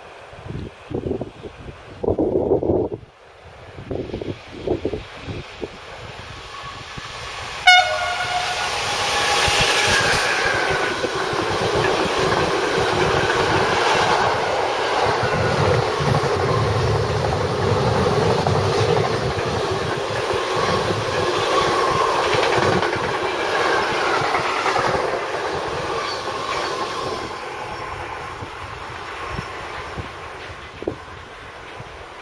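Freight train of double-deck car-carrier wagons on an electrified main line passing close by. A short horn blast sounds about eight seconds in as the locomotive arrives, then the wagons roll past with a steady rumble and wheel noise for about twenty seconds, fading near the end. Gusts of wind hit the microphone in the first few seconds.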